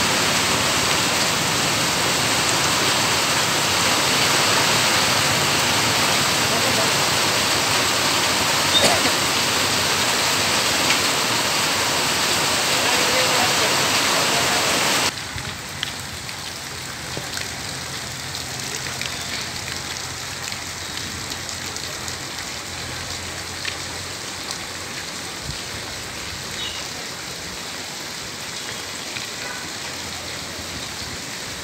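Heavy monsoon rain pouring down on a road, a steady loud hiss. About halfway through, the sound drops suddenly to quieter, lighter rain with a faint low hum underneath.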